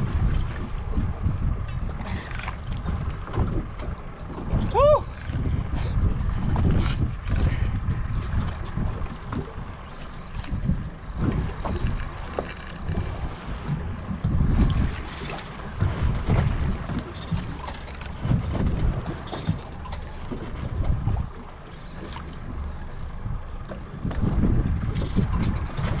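Gusty wind buffeting the microphone on an open boat at sea: a low, uneven rumble that rises and falls, with scattered light clicks.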